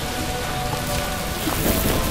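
A steady hiss of outdoor background noise, with faint steady music tones underneath.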